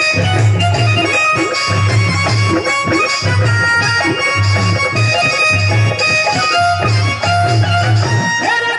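Instrumental interlude of Haryanvi ragni folk music: a harmonium playing a melody in held reedy notes over a steady low drum beat that repeats about once a second.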